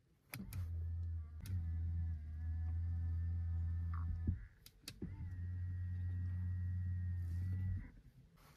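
Motor of the car's power-folding door mirror running twice, each run a steady hum lasting about three to four seconds and starting with a click: the mirror folding in and then swinging back out.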